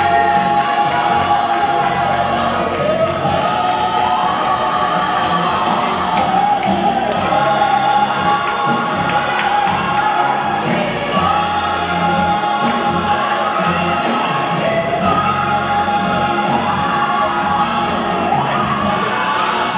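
Gospel music with a choir singing long, held notes that slide up and down in pitch.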